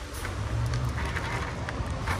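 Steady low rumble of road traffic from a busy avenue, under an even background hiss.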